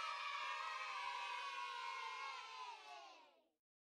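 A crowd of voices cheering in one long, held shout that drifts slightly down in pitch and fades out a little past three seconds.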